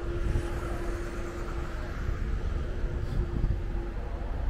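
City street ambience: a steady low traffic rumble with a continuous humming tone that stops near the end.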